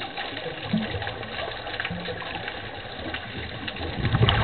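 Underwater ambient noise picked up through a camera housing during a scuba dive: a steady hiss sprinkled with faint crackling clicks.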